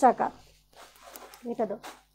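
A woman's voice in a couple of short bursts, with faint rustling between them as a long gown's fabric is bunched up in her hands.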